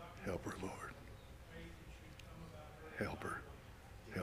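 Quiet, indistinct spoken prayer: a voice speaking softly in two short, breathy phrases, one just after the start and one about three seconds in, too faint to make out words.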